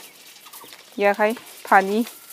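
A person's voice: a few short syllables about a second in, then a longer drawn-out sound near the end.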